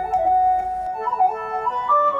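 Yamaha PSR arranger keyboard playing a dangdut suling (bamboo flute) melody with a layered, edited flute-like voice. The notes are held and joined, with short slides between them, and the line rises near the end.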